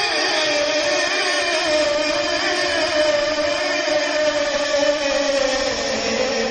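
A male naat reciter's voice, unaccompanied by words here, holding one long sung note that wavers in pitch and slides lower near the end.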